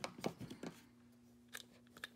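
A few light plastic clicks and taps as a Godzilla action figure is handled and set down. There is a cluster in the first half second or so, then two more soft clicks near the end.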